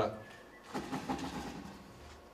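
A faint, indistinct voice-like sound about a second in, lasting under a second, over the quiet room tone of a hall. It comes off the microphone and is unexplained, prompting a joking remark about a ghost.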